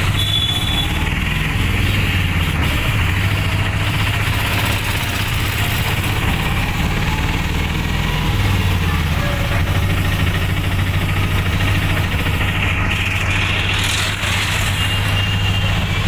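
Auto-rickshaw engine running steadily under way, heard from inside the open cabin as a constant low drone. Two brief high-pitched beeps come through, one near the start and one near the end.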